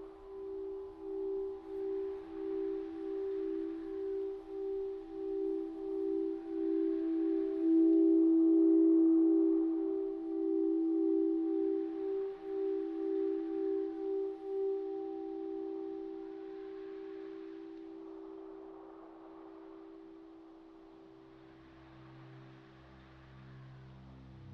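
Crystal singing bowls ringing with two close, steady tones that beat against each other in a slow pulse, swelling about eight seconds in and fading away from about fifteen seconds. A deeper tone comes in near the end.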